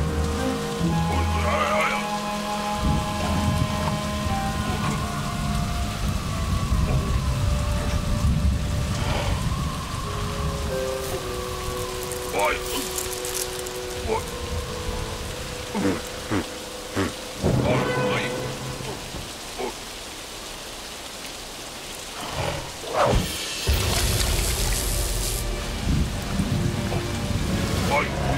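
Animated rainstorm soundtrack: steady heavy rain with low rumbles of thunder, under a sparse musical score of short held notes. Several sharp sound-effect hits come in the second half.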